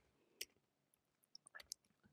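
Near silence broken by a few faint computer keyboard keystrokes: a single click about half a second in, then a quick run of clicks near the end.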